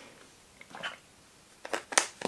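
A plastic screw cap being twisted back onto a drink carton, giving a few short sharp clicks in the second half, after a faint rustle of the carton being handled.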